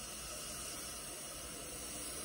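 A person takes one slow, deep in-breath through the nose, heard as a steady, soft breathy hiss. It is a deep cleansing breath taken during breathwork.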